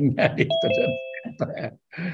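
A two-note chime, a higher note followed at once by a lower one, about a second long and cutting off abruptly, heard over a man talking.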